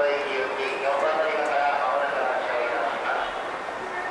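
A Japanese public-address announcement of bus departures, a voice running on without a break.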